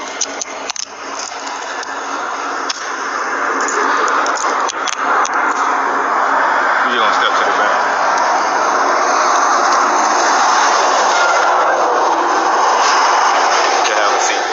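Steady loud rushing noise of a freight train rolling past, picked up by a police body camera; it builds over the first few seconds and then holds. Clicks and rustles of the camera come early on.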